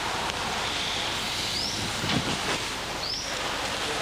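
Steady outdoor background hiss with two short, high, rising chirps, one before the middle and one near the end.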